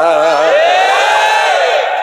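A man's wavering, intoned note ends about half a second in, and a crowd of male voices answers with one long chanted call that rises and then falls in pitch.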